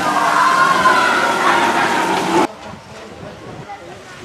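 Steady rush of water from an artificial waterfall with people's voices and shouts over it. It cuts off suddenly about two and a half seconds in, leaving a much quieter background with faint voices.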